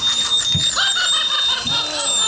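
Eerie sound effects from a haunted maze's soundtrack: high-pitched whines gliding up and down over a steady high tone, with a quick run of short chirping tones in the middle.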